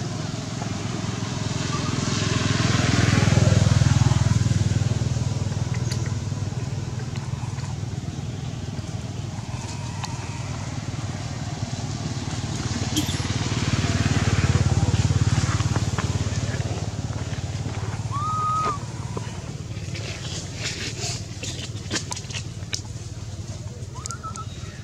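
Low engine rumble of motor vehicles passing at a distance, swelling and fading twice. A short high squeak comes about three quarters of the way through.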